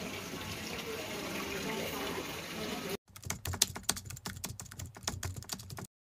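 Low background noise with faint voices, then an abrupt cut to about three seconds of quick, irregular keyboard typing clicks, the kind of typing sound effect laid under a text caption. The clicks stop just before the end.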